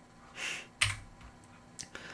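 A short in-breath followed by a soft mouth click and a couple of faint ticks from a man pausing before he speaks again.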